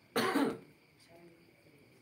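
A man coughs once, a short burst just after the start.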